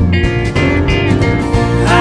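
Live country band playing between vocal lines: strummed acoustic guitar with bass and drums, and a high sustained lead line entering just after the start. A voice comes back in at the very end.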